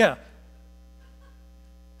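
The tail of a man's spoken "yeah" at the very start, then steady electrical mains hum: a low buzz with a few faint fixed tones above it.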